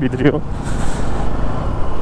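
Wind noise on the microphone of a Bajaj Pulsar NS200 motorcycle on the move, with engine and road noise beneath. A voice breaks off in the first half-second.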